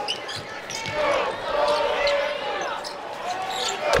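Live basketball game sound: arena crowd noise with a ball dribbling and short sneaker squeaks on the hardwood court, and one sharp loud knock just before the end.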